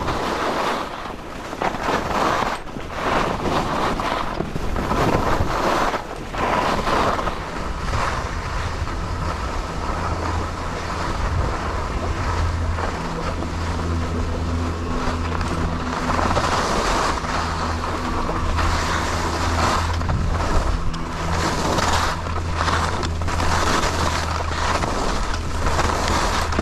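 Skis scraping and carving down groomed, packed snow, with wind rushing over the camera microphone; the rush rises and falls in waves through the run. A steady low hum runs underneath through much of the second half.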